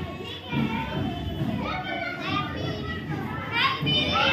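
Many children's voices chattering and calling out at once, growing louder near the end with a rising shout.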